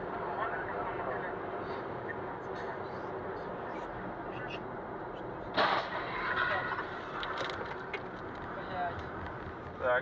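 Steady road and engine noise inside a moving car's cabin, with a sudden loud crash about five and a half seconds in as a truck ahead leaves the road.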